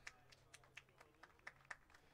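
Near silence with a few faint, scattered hand claps over a faint low hum.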